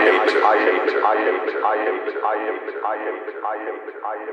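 Looped vocal sample repeating a short spoken phrase, 'I am the', about every 0.6 seconds, with the drums and bass gone and the low end cut away so it sounds thin. It fades out steadily as the track ends.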